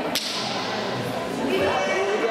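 A single sharp smack of a handball hitting the hard sports-hall floor, just after the start, with a short echo off the hall. Children's voices call out throughout.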